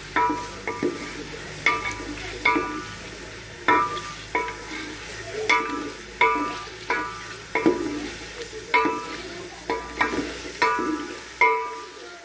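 Wooden spoon stirring chicken and onions frying in oil in a metal pot. It knocks against the pot about twice a second, each knock ringing briefly, over a steady sizzle from the frying.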